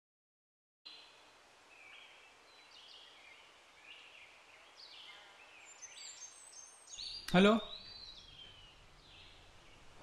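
Birds chirping and calling in the background, faint, with many short high calls over a quiet outdoor haze. The sound is cut out completely for about the first second.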